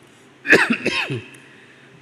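A man coughs once, clearing his throat, about half a second in; the sound lasts under a second.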